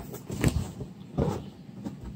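A few short rustles and light knocks from handling a T-shirt and a cardboard subscription box.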